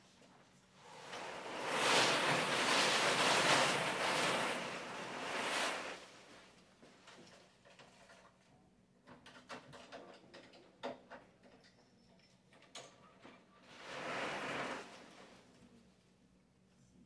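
Large lottery drum full of paper tickets being turned, the tickets tumbling inside with a rushing, surf-like sound for about five seconds. Then come a few light clicks and knocks as the drum is opened, and a shorter rush of tickets near the end as one is drawn.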